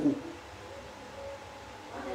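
A pause in a man's French monologue: the tail of his last word, then quiet room tone with a couple of faint, brief low hums.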